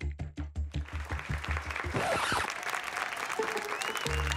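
Studio audience applauding over background music with a steady beat. The applause begins about a second in and carries on to the end, while the music's low beat drops out about halfway through.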